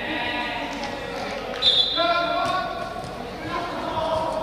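Footballs being kicked and dribbled on artificial turf, with short thuds echoing in a large indoor hall, under several young voices calling out. A brief high shrill note sounds about halfway through.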